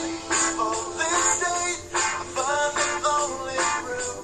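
Background music: a song with a sung vocal line over a regular beat.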